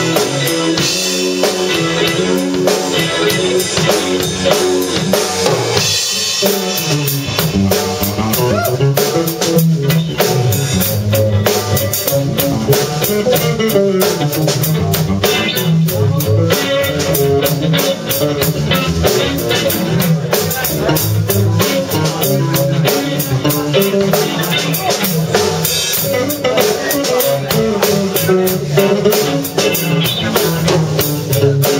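Live rock band playing: electric guitar, electric bass and drum kit together, the drumming growing busier with cymbals about six seconds in.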